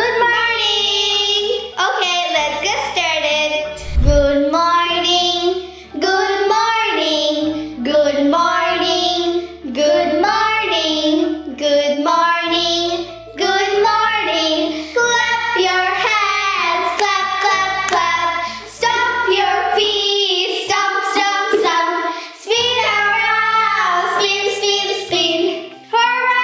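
Children singing a children's song over a musical backing track with a bass line, the sung phrases running continuously with short breaks between lines.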